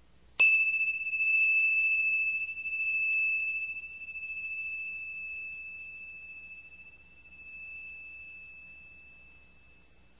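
A single bell-like chime struck once about half a second in, one clear high ringing tone that fades slowly over about nine seconds, wavering in loudness as it dies away. It marks the start of the tape's second side.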